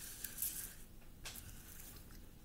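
Cards being slid and rubbed across a wooden tabletop under the hands: a faint papery rubbing, strongest about half a second in, with a brief second scrape a little past the middle.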